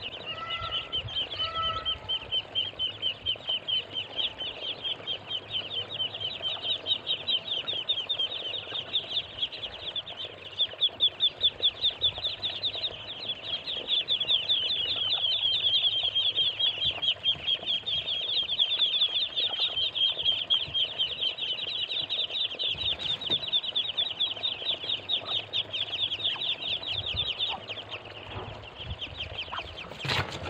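A crowd of ducklings peeping nonstop, many short high calls a second overlapping into a steady chorus. A few lower, falling calls stand out in the first two seconds.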